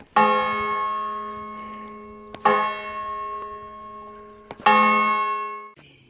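A bell struck three times at even intervals, each stroke ringing on and slowly fading before the next.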